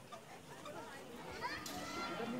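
Background voices of people, children among them, talking and calling out at a distance; a high, rising call comes through about one and a half seconds in.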